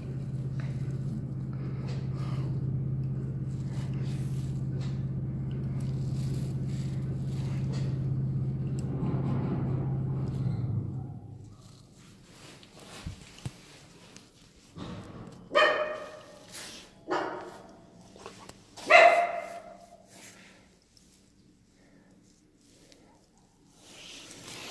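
Lift drive motor humming steadily while the car travels, winding down and stopping about eleven seconds in. Then a dog barks a few times, the loudest bark near the end.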